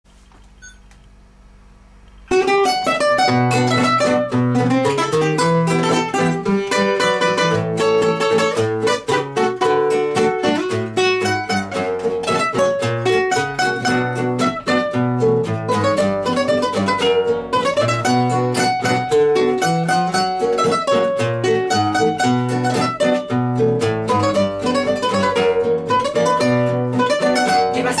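Two classical guitars playing the instrumental introduction of a bolero rocolero, a steady run of plucked melody over bass notes. The playing starts suddenly about two seconds in, after a quiet start.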